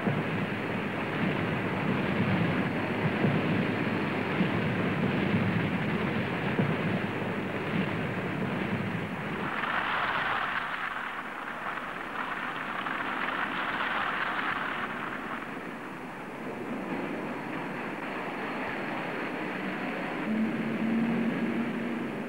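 Molten steel tapping from an LD oxygen converter into a teeming ladle: a continuous rushing, rumbling noise with no distinct tones, swelling louder twice near the middle.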